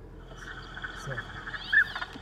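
Recorded northern pintail calls played back from a phone: a drawn-out whistling call with short rising notes near the end.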